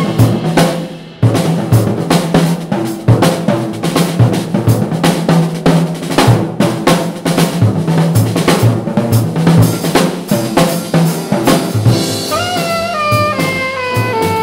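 Jazz drum kit taking a solo break: quick snare, bass drum and cymbal strokes with a loud accent at the start. Alto saxophone comes back in with a run of notes near the end.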